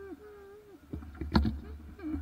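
A person's voice, drawn out and bending in pitch, over a steady low rumble, with one sharp knock about one and a half seconds in.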